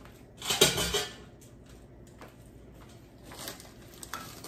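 Dishes and cutlery clattering, a short burst of clinks and knocks about half a second in, followed by a couple of faint knocks.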